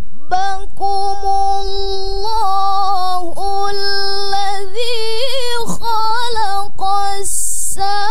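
A young woman's melodic Qur'an recitation (tilawah) through a microphone, holding long ornamented notes that waver and step between pitches, with a brief hiss near the end.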